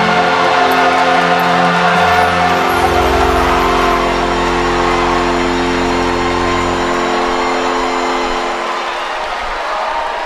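A choir and its accompaniment hold one long final chord with a deep bass under it. The chord dies away about eight or nine seconds in, leaving crowd noise.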